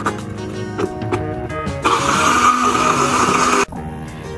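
Small electric blender motor running for about two seconds, grinding garlic and shallots into a paste; it starts a little before the halfway point and cuts off suddenly. Background music plays throughout.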